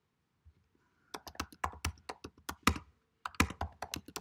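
Typing on a computer keyboard: a quick run of key clicks starting about a second in, a short pause, then a second run near the end.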